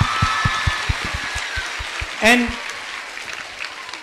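Large audience applauding, the clapping dying down gradually.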